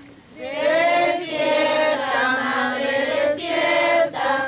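A group of girls and women singing together, the phrase starting about half a second in, with a short breath about three seconds in.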